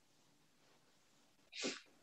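Near silence in a pause between sentences, broken about a second and a half in by one short, faint breath noise from the man.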